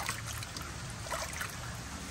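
Water trickling and lapping in a shallow plastic pool as hands work around a large catfish, with small faint splashes, over a steady low rumble.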